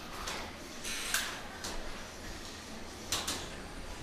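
Antweight combat robots in the arena: a steady hiss of background noise with a few brief knocks and scrapes, about a second in and again a little after three seconds.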